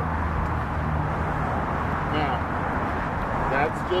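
Steady outdoor traffic noise with a low vehicle hum that fades out about a second and a half in, and a couple of brief snatches of voice.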